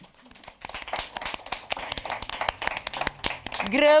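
A group of people applauding, with many hands clapping that pick up about half a second in. A woman's voice starts speaking near the end.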